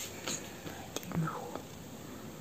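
Quiet speech, partly whispered, with a single faint click about a second in.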